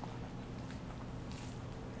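Faint soft rustling of a bamboo sushi rolling mat as hands press it tight around a nori roll, over a steady low room hum.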